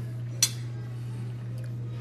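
A metal fork set down on a plate: one sharp clink about half a second in, over a steady low hum.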